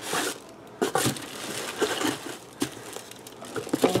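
Packaging rustling and crinkling as items are handled and set back into a cardboard box lined with crinkle-paper shred, with a few light knocks of objects being put down.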